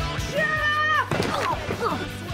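Background music with a child's held shout that starts about half a second in, drops in pitch and breaks off about a second in, followed by short cries falling in pitch.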